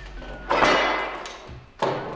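Two heavy clunks about a second and a quarter apart as the Mark 19 grenade launcher's receiver is turned over and set back down on a wooden table, the first ringing on briefly.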